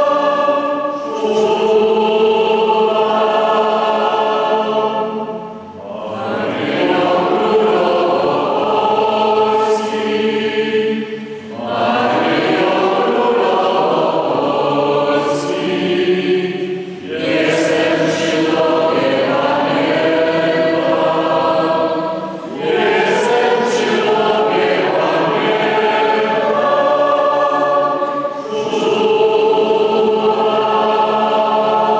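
Many voices singing a slow hymn together, in long held phrases of about five to six seconds with a short break for breath between them.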